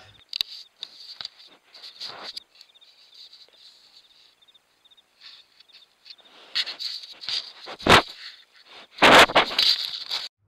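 A bear nosing and pawing at a trail camera, heard through the camera's own microphone: scattered scrapes and clicks of fur and claws on the housing, a sharp knock about eight seconds in, then a loud rubbing rush as its fur presses over the camera near the end.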